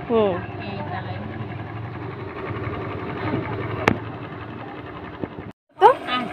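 Steady low hum of a small electric fan running, under faint voices. A short spoken sound comes at the start, a single sharp click about four seconds in, and the sound drops out for a moment just before the end.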